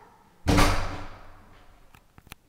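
A single loud thud about half a second in, dying away over about a second.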